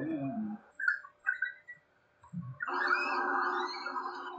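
Red panda calls played back from a video: a few short high squeaks about a second in, then a longer continuous call with wavering high notes from a little past the middle onward.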